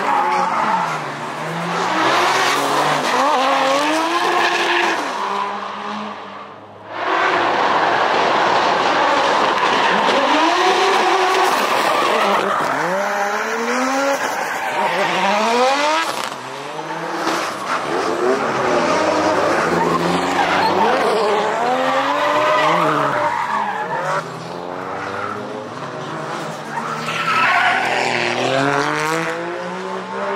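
Several drift cars in turn sliding through a hairpin on a mountain road, engines revving up and down hard while their tyres squeal and skid, with a short lull about seven seconds in.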